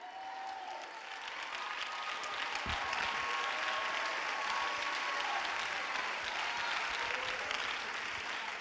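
A congregation applauding: a steady wash of clapping that swells about a second in and holds.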